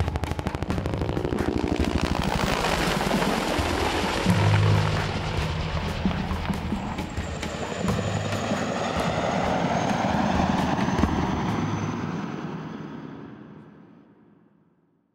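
Helicopter rotor beating fast, mixed with music. Everything fades out over the last couple of seconds.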